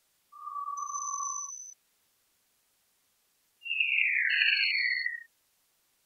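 Synthetic tones played back from brush strokes painted into a spectrogram editor. First comes a steady, slightly falling tone a little above 1 kHz for about a second and a half, with a faint high whistle over part of it. After a two-second gap come two louder, overlapping tones that glide downward, with a thin high tone above them.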